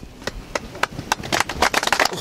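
A small group of men clapping their hands. The claps are scattered at first and grow quicker and denser toward the end.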